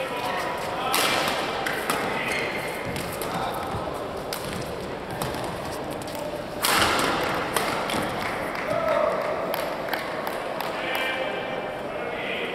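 Badminton doubles rally: a series of sharp racket strikes on the shuttlecock and quick footwork on the court, with the loudest strike-burst about two-thirds of the way through, mixed with voices in the hall.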